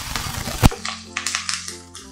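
Oil sizzling as sliced onion, curry leaves and dried red chillies fry in a kadai, stirred and scraped with a metal spoon, with a sharp clink of the spoon against the pan just over half a second in. After the clink the frying is fainter, under background music with held notes.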